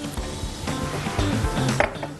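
Vinegar poured in a thin stream into a glass bowl of fish fillets, a light steady splash that stops just before the end, over background music.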